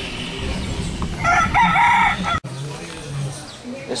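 A rooster crowing once, a little over a second long, starting about a second in and cut off abruptly.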